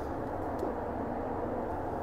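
Steady even hum and hiss of a paint booth's ventilation fan moving air, with a faint tick about half a second in.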